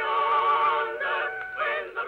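Singing from an early acoustic phonograph recording: sustained sung notes with a wavering vibrato, sounding thin and dull with no high end.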